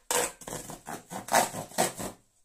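Makedo safe saw, a plastic serrated cardboard saw, sawing back and forth through corrugated cardboard: about five quick, scratchy strokes, the loudest near the end, cutting on both the push and the pull.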